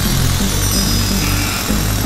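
Music: an intro track with a bass line stepping at a steady pace.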